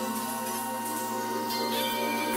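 Experimental electronic music: layered synthesizer drones made of many sustained steady tones, with a strong low tone and a high steady tone that drops out about three-quarters of the way through as the upper tones change.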